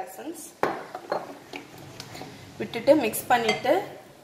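A spoon clinking and knocking against a glass mixing bowl as a thin liquid pudding mix is stirred. There are a few sharp clinks in the first second and a half.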